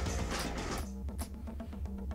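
Background music score with a steady low bass line and a held note, with a few light high percussion ticks.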